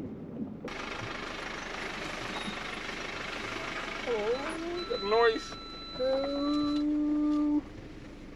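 Steady road and engine noise inside the cab of a moving Sprinter camper van, starting suddenly about a second in. Short wordless voice sounds come a little past the middle, then a held tone lasts about a second and a half and cuts off abruptly near the end.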